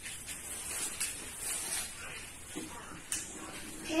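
Low room noise with a steady hiss while a child pauses between words. The child's voice murmurs briefly about two and a half seconds in, followed by a single light click.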